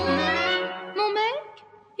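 Orchestral accompaniment of a French chanson between two sung lines. A held note and the bass die away, a short rising phrase follows about a second in, and then there is a brief near-silent pause.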